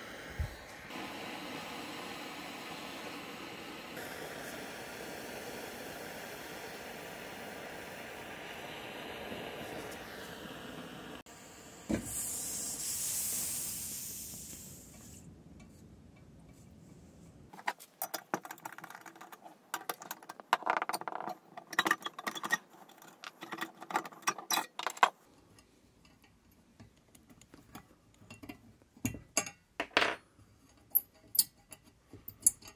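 Vintage brass blowlamp burning steadily with an even rushing noise; after a cut, a high-pitched hiss of air escaping the tank fades over about three seconds as the pressure is let off to put it out. Then come irregular sharp metallic clicks and rattles of the brass lamp's parts being handled.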